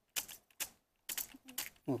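Plastic gears and parts of a hand-cranked VEX robotic arm clicking as its claw wheel is turned by hand, a few irregular clicks.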